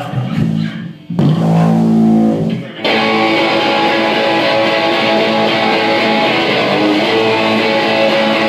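Live electric guitar through an amp: a few low ringing notes are picked, then about three seconds in it breaks into a loud, dense strummed part that carries on steadily.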